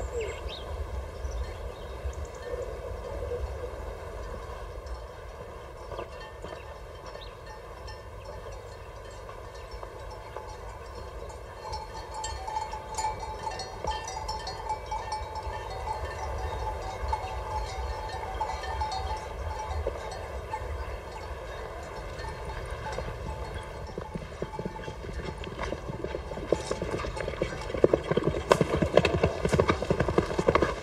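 Horse hooves clip-clopping, growing louder in the last few seconds as a horse approaches.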